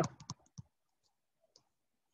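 A few faint, short clicks in the first half-second and one more about a second and a half in, otherwise silence.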